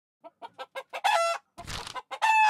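Hen clucking: a quickening run of short clucks that builds to a loud squawk about a second in, then a short noisy burst near the end.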